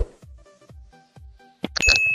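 Quiet background music, then near the end a couple of sharp mouse-click sounds followed by a high, steady bell ding: the sound effect of an animated subscribe-button overlay being clicked.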